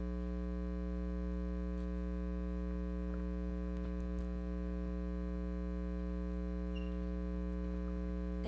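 Steady electrical mains hum, a low buzz with many overtones, with a few faint clicks partway through.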